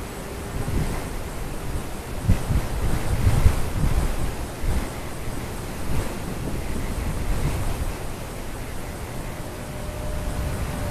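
Wind buffeting the microphone in irregular low gusts, strongest from about two to four and a half seconds in.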